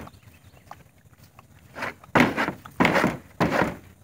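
A horse feeding at a plastic feed trough, with repeated sharp knocks at the trough, about one and a half a second, starting about two seconds in after a quieter start.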